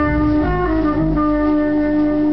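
Instrumental jazz ballad: plucked double bass notes low down under a melody instrument that shifts pitch briefly, then holds one long note.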